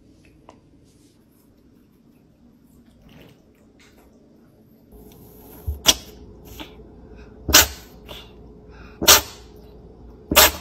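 A congested domestic cat sneezing three times in a row, short sharp sneezes about a second and a half apart starting about halfway in, as its blocked nose clears after facial steaming. The congestion comes from a nasal tumour and its radiation treatment, or from inflammation.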